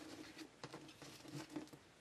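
Faint clicks and light rustling of baseball trading cards being handled and slid against each other in a stack.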